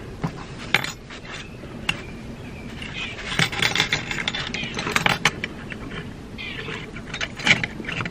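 Light metallic clicks and rattles with scraping in between, as a wood-burning pen is handled and settled into its wire stand, which keeps letting it fall.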